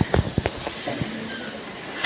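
A wheeled hospital ward screen being pushed aside, its frame rattling with a cluster of knocks in the first second, over the murmur of a hall full of people.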